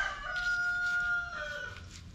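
A rooster crowing: one long held call that steps down in pitch and ends near the end.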